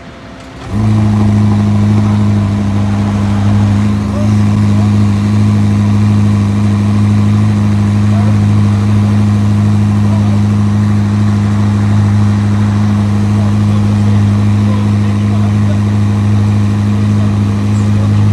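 Ferrari SF90 Stradale's twin-turbocharged V8 starting up abruptly under a second in, then idling loudly at a high, dead-steady pitch.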